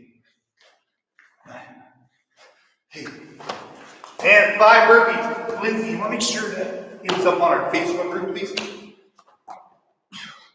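A person's voice, loud and drawn out, in two long stretches over the second half, after a few seconds of only faint sounds.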